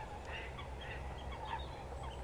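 Birds calling: a scatter of short, faint calls over a low steady rumble.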